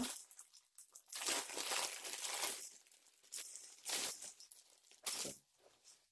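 Plastic packaging crinkling and tearing as fabric sandbags are pulled out of their plastic wrap: a long rustle about a second in, then two shorter ones.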